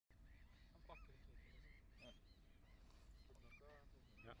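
Faint calls of a flock of birds, many short calls overlapping throughout, over a low steady rumble.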